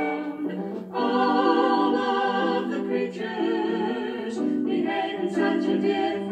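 A children's animal song being sung to music, in the verse where the horses go 'clippity-clop'. The notes are held and move in steps, with a brief break a little before the first second.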